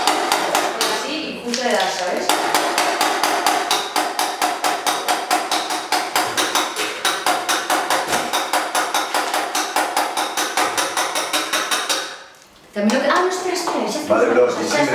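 Rapid, even metal-on-metal tapping on a vintage moped's engine, about four strikes a second, kept up for several seconds before stopping suddenly near the end.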